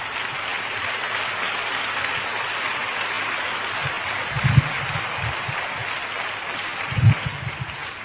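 Audience applauding steadily, with two short low thumps about four and a half and seven seconds in.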